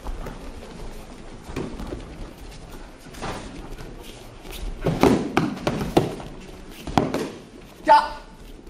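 Padded foam sticks striking helmets and body protectors during sparring, a flurry of thuds about five to seven seconds in, with footsteps on the mat and audience voices echoing in a large hall. A short high cry comes right at the end.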